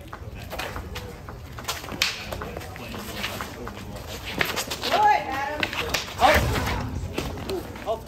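Wooden short sticks knocking together in a sparring bout: a scattered series of sharp clacks, busiest in the first two seconds and again around four to five seconds in, with short shouts from people about five and six seconds in.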